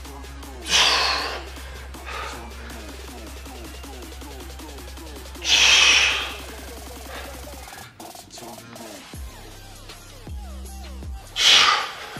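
A man's heavy exhalations, one about a second in, one at about five and a half seconds and one near the end, each with the effort of a Hindu push-up, over steady background music whose bass drops out about two-thirds of the way through.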